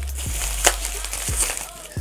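Plastic bubble wrap crinkling and rustling as it is pulled off packaged tins, with a few light ticks and one sharp snap about two-thirds of a second in.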